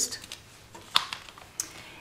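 Clear plastic stamp packets being handled on a table: a few light clicks and crackles of plastic, the sharpest about a second in.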